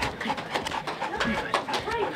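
Quick, irregular knocks and scuffs of a Siberian husky bounding up to the camera, with faint voices in the room.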